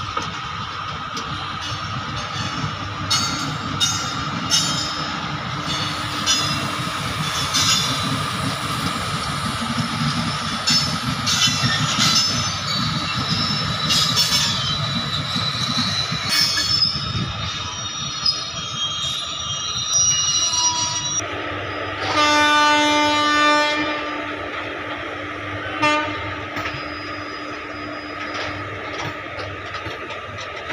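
Loaded goods train of BOXN HL open wagons hauled by two electric locomotives rolling past, with a steady rumble, wheels clicking over rail joints and squealing in places. About two-thirds through, a train horn gives one loud blast of about a second and a half, then a short toot a few seconds later.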